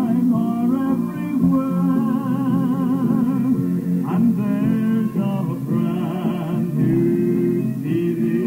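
Gospel song: a singing voice with wide vibrato over steady instrumental accompaniment.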